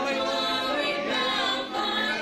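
Congregation singing a worship song together, with a woman's voice on a microphone leading.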